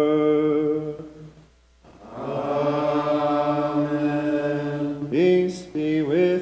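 A single man's voice chanting a Maronite liturgical chant in long, held sung notes. There is a brief pause about a second and a half in, then a long held note that ends in an upward slide near the end.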